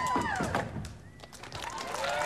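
Skateboard knocking on a vert ramp, a few sharp knocks about half a second in, over background music that fades out about a second in.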